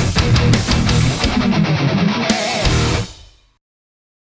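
Solar X1.6 Ola electric guitar through a high-gain distorted tone, playing a fast heavy metal riff with a string bend near the middle. The riff stops about three seconds in and rings out briefly into silence.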